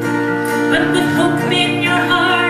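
Woman singing a folk song, accompanying herself on a strummed acoustic guitar.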